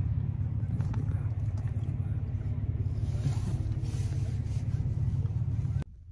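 Steady low vehicle rumble heard from inside a car's cabin, cutting off suddenly just before the end.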